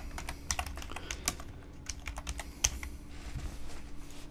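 Computer keyboard being typed on: a quick, irregular run of key clicks as a short phrase is entered, thinning out near the end, with a faint steady hum beneath.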